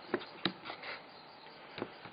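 A few faint, short clicks and light rubbing from fingers handling the AR.Drone's foam hull and carbon-fibre plate, over quiet room tone.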